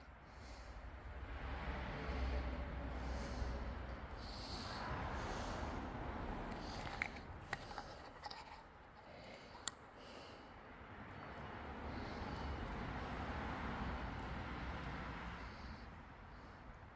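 Faint distant road traffic carried into the cave: a soft rushing noise with a low rumble that swells and fades slowly, twice, as vehicles pass. A few small clicks sound in the middle.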